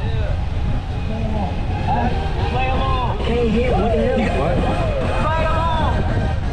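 Several people's voices talking and chatting over a steady low rumble.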